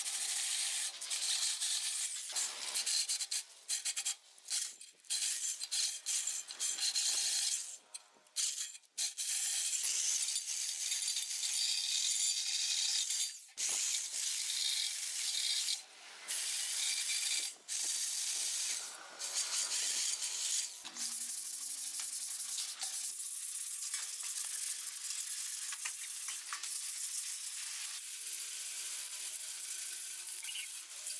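Cordless drill spinning abrasive attachments against the rusty steel swingarm of a 1978 Honda Super Cub C50, scouring off rust with a rasping hiss. It stops and starts many times in the first two-thirds, then runs steadier.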